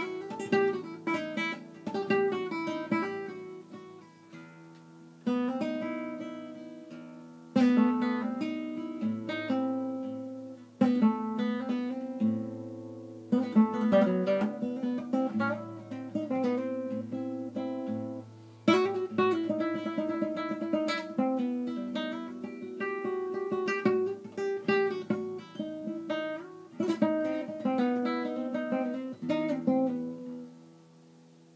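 Guitar playing an oriental-style instrumental: a plucked melody with chords, in phrases that each open with a loud struck attack, over a held low bass note in the middle stretch.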